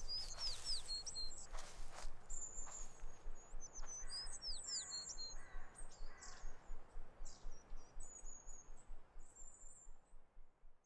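Birds chirping and singing, with many short high chirps and quick falling whistles; the birdsong fades out near the end.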